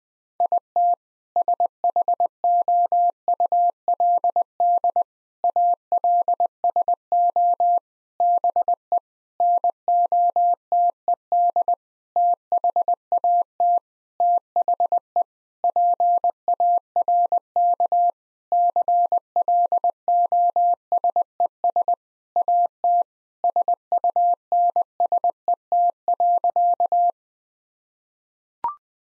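Morse code practice tone at 20 words per minute: a single steady pitch keyed on and off in dots and dashes. It repeats the sentence "It should also be noted that the park closes at sunset" and stops about a second before the end.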